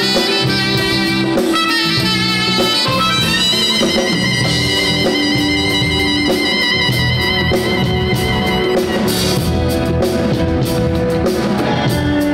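Soprano saxophone playing smooth jazz over a live band of keyboards, electric guitar, bass, drum kit and percussion. The sax plays a quick run of notes, then holds one long high note for about five seconds before the band carries on without it.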